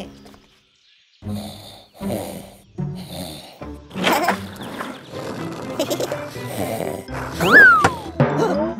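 Children's cartoon soundtrack: background music starting after about a second of near silence, with cartoon sound effects over it. About four seconds in a loud rushing, rumbling sound comes as a skateboard speeds past, and near the end a sharp sound rises and then falls in pitch.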